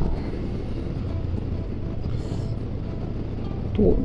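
Suzuki V-Strom 250's parallel-twin engine running steadily at cruising speed, with road and wind rush, kept at low revs during its break-in. A man's voice starts right at the end.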